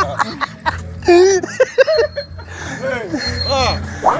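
A man's voice over background music with a steady low bass.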